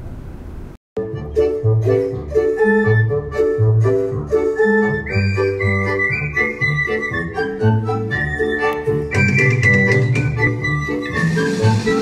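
Bouncy, organ-led show music from the singing-dwarfs animatronics scene at the end of Disney's Seven Dwarfs Mine Train, the ride's song on repeat over its speakers while the train stands stopped. It starts about a second in, after a brief gap, with a steady beat throughout.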